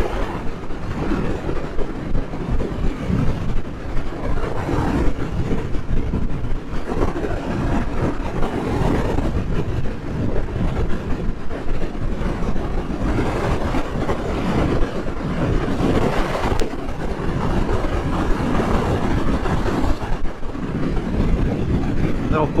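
Wind rushing and buffeting over the microphone, mixed with the running of a 2023 Suzuki GSX-8S's parallel-twin engine and tyre noise at steady highway speed: a dense, fluttering low rumble with no change in pace.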